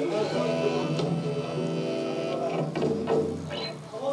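Live band music with long held notes that step from pitch to pitch.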